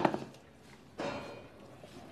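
A dog's bone knocking once against a tiled floor about a second in, as the dog works at it with its mouth.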